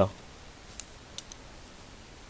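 Quiet room tone with three faint, short clicks about a second in.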